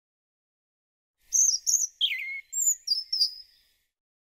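A short run of bird chirps and whistles, several quick high notes with one falling whistle among them. It starts about a second and a half in and stops a little before the end.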